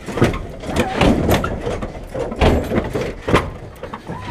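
Irregular knocks, clunks and rustles of handling around a car's open door, about five sharp knocks in four seconds over a low rumble.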